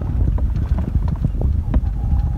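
Golf cart driving across grass: a steady low rumble with frequent small knocks and rattles as the cart bounces over the turf.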